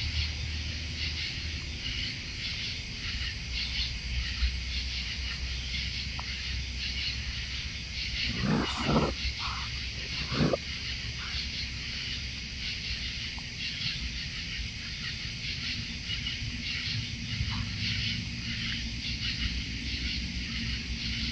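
A few short raccoon snarling calls about halfway through, over a steady chorus of night insects and a low background hum.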